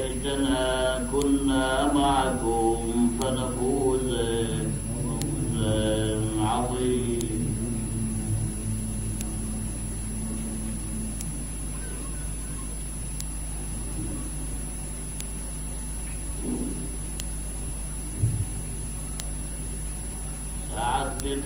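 A man's voice chanting in long, drawn-out melodic phrases for about the first seven seconds, then stopping. The rest is the steady electrical hum of an old 1970s recording.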